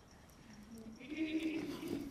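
A person's voice making a drawn-out, bleat-like call in imitation of a sheep or goat. It starts about a second in, after a near-silent pause, and is held steadily.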